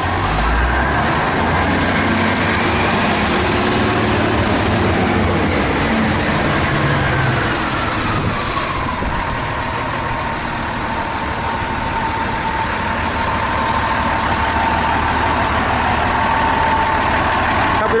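UD concrete mixer truck's diesel engine running steadily, with a whine that glides up and back down over the first half, then holds one steady pitch to the end.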